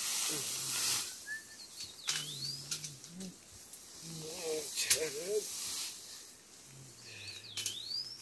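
Leaves and stems rustling as someone pushes through dense undergrowth, with a sharp snap about five seconds in. A bird gives a high whistle that dips and rises, twice, about two seconds in and near the end.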